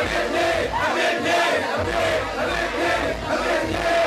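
A group of men shouting and chanting together into microphones over a hip-hop beat, with a steady bass pulse underneath and crowd voices mixed in.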